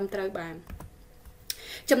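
A few sharp computer clicks, a mouse or keyboard advancing a slide presentation, fall in a short pause in a teacher's speech. Speech ends the first half-second and resumes just before the end.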